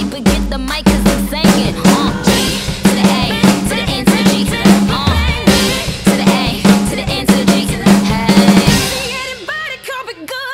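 Acoustic drum kit playing a busy pop groove of kick, snare and cymbal hits along with the song's backing track and vocals. The drums stop about nine seconds in, leaving the recorded singing.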